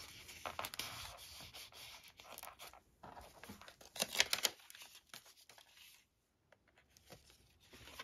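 Thick paper pages of a handmade, heavily embellished journal being handled and turned: a run of paper rustles and swishes, loudest about four seconds in, then quieter.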